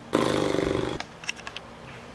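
A person's low, rattling vocal sound, like a weary groan, lasting about a second, followed by a few faint clicks.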